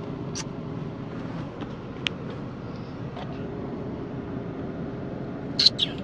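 Car engine running, heard from inside the cabin as a steady low hum. A few short sharp clicks cut through it, the loudest pair near the end.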